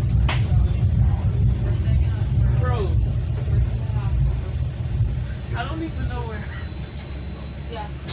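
Metra commuter train heard from inside the car: a steady low rumble of the train running, with indistinct voices of other passengers twice. The rumble gets gradually quieter toward the end, and a faint high steady whine comes in during the last few seconds.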